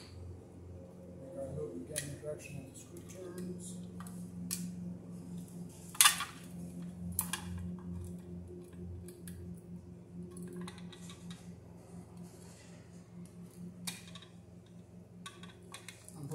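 Red-handled needle-nose pliers working electrical cable at a plastic electrical box, giving scattered snips and clicks, the sharpest about six seconds in. A steady low hum runs underneath.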